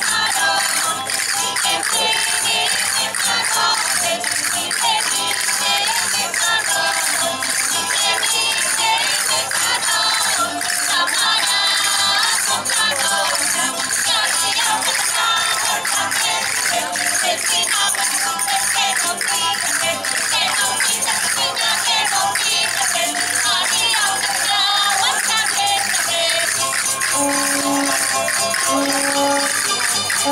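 Live music for a traditional folk dance, played by a band of guitars and other plucked strings with percussion keeping the beat.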